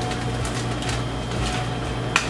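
Steady low hum of a room appliance running, with a hand stapler clicking faintly through kraft paper as a bouquet wrap is stapled, about half a second in.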